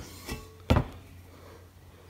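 Quiet room tone with a low steady hum, broken by one sharp, short knock a little under a second in.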